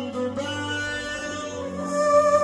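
Live music: a man sings held, drawn-out notes into a microphone over a plucked-string accompaniment, heard through a sound system.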